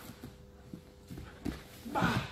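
Bare feet stepping and shuffling on padded grappling mats, with several soft thuds spaced unevenly through the moment as the passer moves around his partner.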